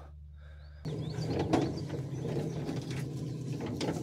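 A small boat motor running with a steady low hum as the aluminum boat moves through shallow water, with a couple of short knocks on the hull.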